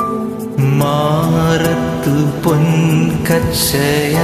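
Man singing a slow Malayalam song over a karaoke backing track, his voice picked up close on an earphone microphone; a new sung line begins about half a second in.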